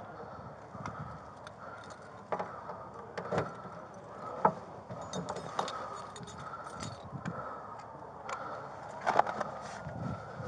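Body-worn camera handling noise as an officer walks and works at a patrol car's trunk: rustling and jingling of his gear, with scattered sharp clicks and knocks, the loudest about halfway through and near the end as he reaches into the trunk.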